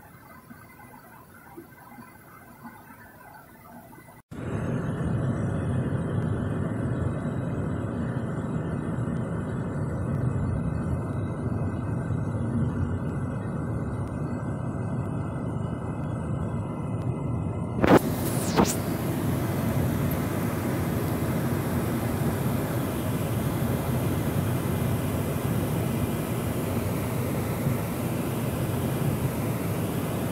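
Steady road and engine noise inside a moving car's cabin. It starts suddenly about four seconds in after a quieter stretch. A couple of clicks come about 18 seconds in, and after them the noise turns hissier.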